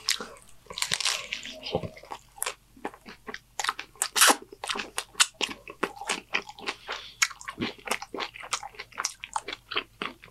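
Close-miked chewing of a homemade Gordita Crunch taco: a rapid, irregular string of crisp crunches from the hard taco shell, with softer, wetter chewing in between.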